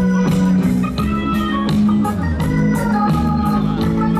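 Live rock band playing: sustained organ-sounding keyboard chords over a steady drum beat.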